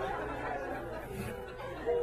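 Comedy club audience laughing and murmuring after a punchline, the crowd noise fading.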